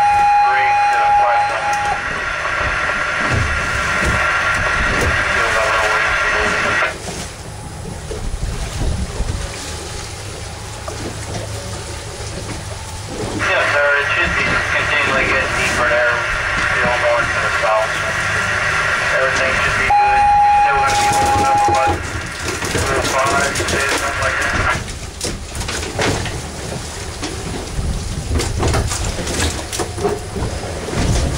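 Two-way radio on the boat giving two bursts of crackly, unclear voice traffic that switch on and off sharply. A steady beep sounds at the start and again partway through the second burst, over a low rumble of wind and water.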